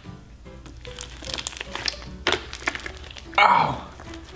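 Hands squishing and stretching sticky clear slime packed with peanuts, making a run of short wet clicks and small crackles, with little real crunch from the peanuts. Faint background music runs underneath, and near the end comes a louder squelch with a falling pitch.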